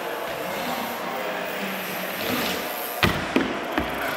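Rocker mini BMX riding across a wooden plywood bowl, its tyres rolling, then a heavy thud about three seconds in as it hits the ramp, with two lighter knocks after it.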